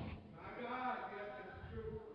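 A faint, drawn-out voice further off in the room, far quieter than the preaching through the microphone.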